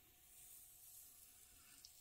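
Very faint hiss of tape being peeled slowly off watercolour paper, swelling a little in the first second, against near-silent room tone.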